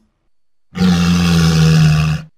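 A walrus call sound effect: one loud, steady-pitched call about a second and a half long, starting about three quarters of a second in.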